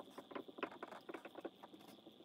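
Marker writing on a whiteboard: a quick, irregular run of faint taps and scratches as each stroke is drawn, over a faint steady high whine.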